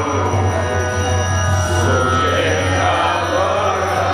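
A man singing a devotional Vaishnava bhajan into a microphone, in a chanting style over steady sustained accompanying tones.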